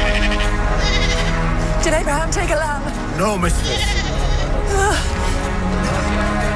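Sheep and goats bleating: several wavering calls from about two to five seconds in, over steady soundtrack music.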